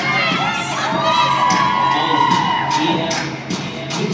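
Crowd of young spectators cheering and screaming, with many high-pitched shrieks and one long held scream through the middle, over dance music playing on the gym's sound system.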